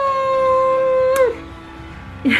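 A voice holding one long high note for about a second and a half, with a slight rise as it starts and a drop as it breaks off, followed by a fainter, lower held tone.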